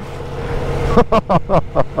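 Ducati Multistrada V4 S's V4 engine held at high revs while wading through deep flood water, under a steady rush of water spray and wind that grows louder over the first second. A man laughs from about a second in.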